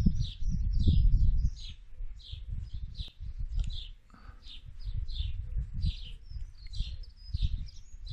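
Small birds chirping steadily, about two to three short high chirps a second, over a low rumble that is loudest in the first second and a half.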